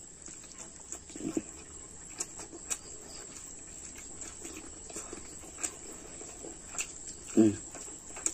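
Close-up eating sounds: wet chewing and lip smacks as a mouthful of rice is eaten by hand, with many short clicks throughout. A brief low hum of the voice comes near the end.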